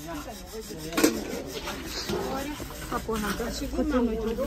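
Stainless-steel pots and plates being scrubbed by hand, a scrubber rubbing and scraping against the metal, with a couple of sharp clinks of metal.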